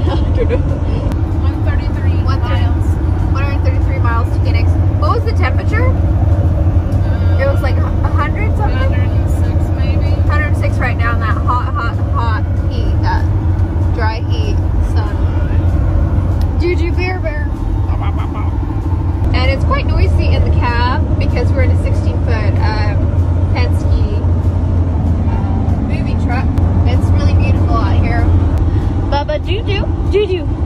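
Steady low road and engine drone inside the cabin of a truck moving at highway speed, with voices talking over it.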